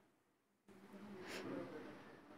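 Near silence at first, then from about two-thirds of a second in, faint voices and background murmur start up abruptly, with one short hiss near the middle.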